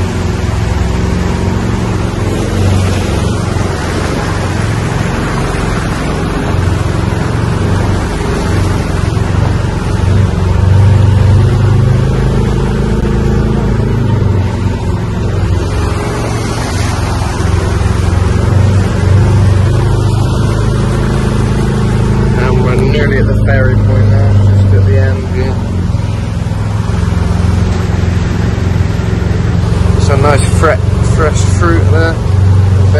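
Engine of an open side-by-side utility vehicle running steadily at driving speed, a low hum under the rush and splash of its tyres through floodwater on the street.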